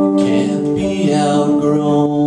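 Electric stage keyboard with a piano sound playing held chords that change every second or so, the accompaniment of a singer-songwriter's song.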